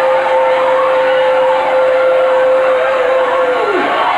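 Noise of a large congregation in a hall, over which one long, steady, high note is held and then drops sharply in pitch and stops near the end.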